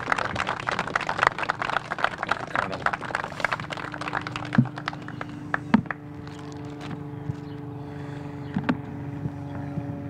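A motor running with a steady hum, with a few sharp knocks over it. For the first few seconds a dense crackle of mixed noise sits over it.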